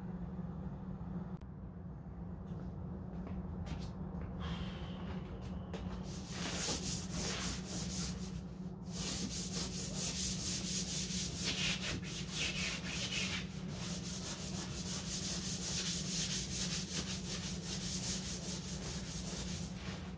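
Hand wet sanding of a fiberglass Corvette hood with sandpaper, smoothing the glaze before filler primer. The rubbing is light and intermittent at first, then from about six seconds in becomes quick, even back-and-forth strokes.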